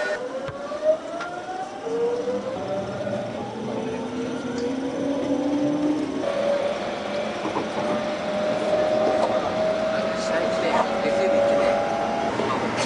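Electric commuter train's traction motors whining, several tones rising together in pitch as the train picks up speed. About six seconds in this gives way to a steadier motor whine that drifts slightly higher, over the rumble of the car.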